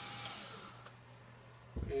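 A steady airy hiss, like a running fan or blower, that fades out about two-thirds of a second in, followed near the end by a low thump of camera handling.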